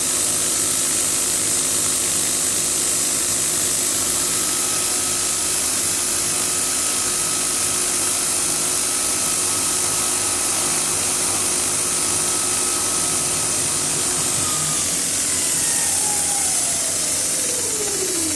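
CNC milling machine spindle running through a light facing cut of about half a millimetre, with a steady high hiss over it. Near the end a whine falls steadily in pitch as the spindle winds down after the pass.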